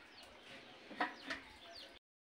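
A hen clucking twice in quick succession about a second in, with small birds chirping faintly in the background.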